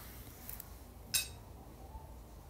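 A single short, sharp clink about a second in, from a hand handling the stainless steel bowl of a stand mixer, over a faint low hum.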